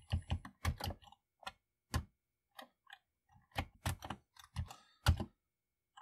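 Keystrokes on a Commodore 64 keyboard: a run of sharp key clicks at uneven spacing, about fifteen in all, bunched in short flurries with brief pauses between.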